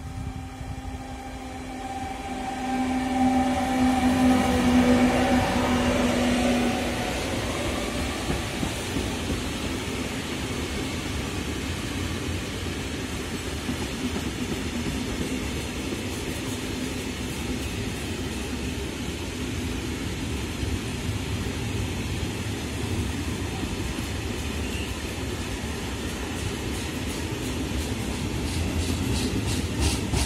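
SNCF BB 75000-class diesel-electric locomotive passing with its engine hum, loudest a few seconds in and dipping slightly in pitch as it goes by, followed by the steady rumble of a long rake of tank wagons rolling past. Regular wheel clicks over the rail joints start near the end.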